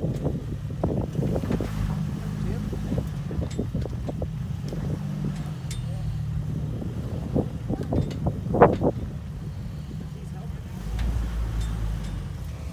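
Jeep Wrangler TJ engine running at low revs as it crawls over rock ledges, with scattered knocks and crunches from the tyres and chassis on stone. The low engine note deepens near the end.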